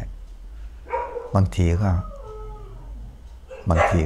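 A dog howling in a wavering, falling call from about two seconds in, quieter than the man's voice around it.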